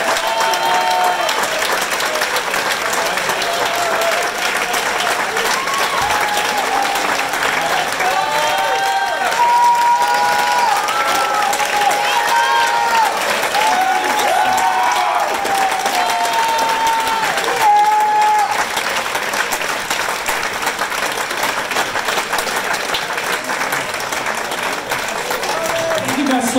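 Audience applauding steadily, with voices whooping and calling out over the clapping through the middle stretch.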